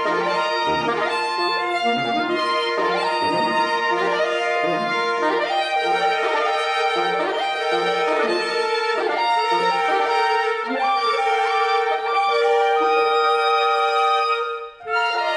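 Saxophone quartet (soprano, alto, tenor and baritone saxophones) playing live, a contemporary concert piece. A middle note is held throughout under shifting upper lines, with short low notes repeated about twice a second and quick rising figures above.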